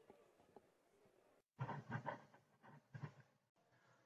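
Near silence, broken by two or three brief faint sounds around the middle.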